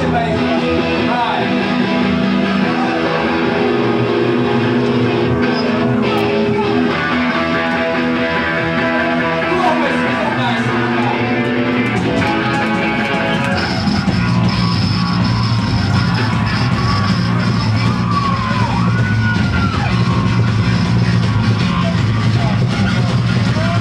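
Live rock band playing a song through the PA. Held, ringing tones fill the first half; about twelve seconds in the low end fills out and the band plays a little louder.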